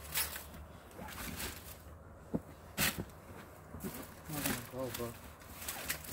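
Low, indistinct voices talking, with a few brief rustles or knocks, one about three seconds in.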